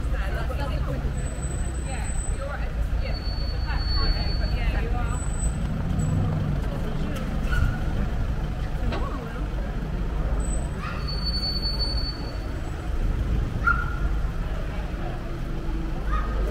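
Street traffic with a steady low engine rumble, and passers-by talking indistinctly close by. A few brief thin high squeals sound now and then.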